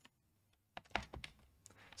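A handful of computer keyboard keystrokes, quick separate clicks starting about three-quarters of a second in. They are the typing that turns a pair of curly braces into square brackets in the code.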